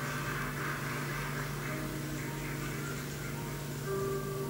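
Steady low hum with a faint hiss above it, typical of an aquarium pump running.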